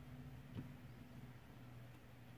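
Near silence with a faint low steady hum, and one faint click about half a second in: a diamond painting drill pen pressing a resin drill onto the canvas.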